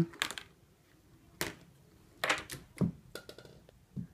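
A handful of sharp, irregularly spaced clicks and knocks from a homemade chain-reaction machine: a ball and parts striking plastic toy-car track and wooden blocks.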